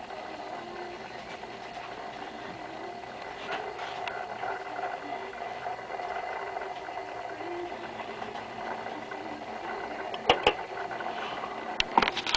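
The small motor mechanism inside a vintage Hamm's Beer motion sign running with a steady whir as it turns the scene panels. A few sharp clicks come near the end.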